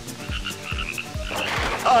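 Cartoon frog croaking sound effects: a quick run of repeated croaks, with a hiss of rain filling in past the middle.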